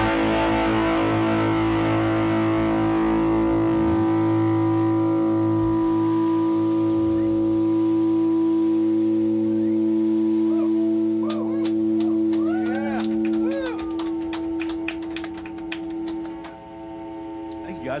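The final chord of a rock song rings out on electric guitar and bass through the amps, held for many seconds and slowly dying away. Scattered claps and short whoops come in during the last several seconds.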